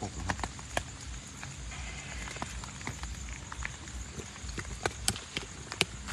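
Rain falling: irregular sharp taps of drops on an open umbrella over a steady hiss of rain, with two louder taps near the end.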